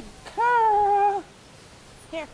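Border collie puppy giving one long, high-pitched whining cry lasting almost a second.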